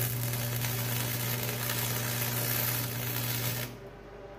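Wire-feed welder's arc crackling steadily over a low hum while a bead is laid along a steel box-blade cutting edge. It strikes up at once and cuts off sharply shortly before the end.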